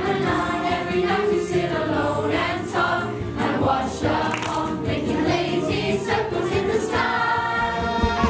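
A group of voices singing together over a musical backing.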